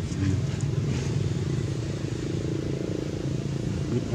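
A steady low engine rumble, like a motor vehicle running nearby.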